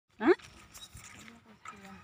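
A brief, loud rising cry in the first moments, followed by faint voices.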